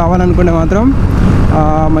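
Bajaj Pulsar NS160 single-cylinder engine running steadily at cruising speed, with wind rushing over the microphone, under a man's talking that pauses briefly in the middle.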